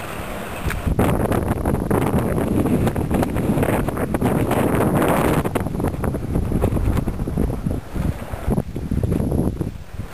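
Wind blowing across the camera's microphone, loud and uneven, starting suddenly about a second in and dropping away just before the end.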